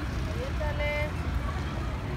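Outdoor city ambience: a steady low rumble of traffic with faint distant voices.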